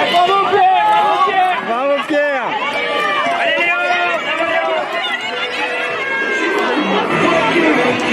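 A crowd of spectators cheering and shouting encouragement, many voices overlapping, with music playing underneath.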